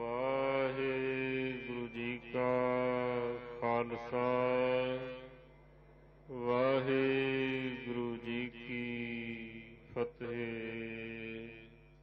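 A single voice chanting Sikh devotional verse (Gurbani) in two long, held phrases of about five seconds each, with a short break between them. A steady electrical hum runs underneath.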